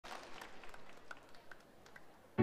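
Faint audience applause with scattered claps, dying away.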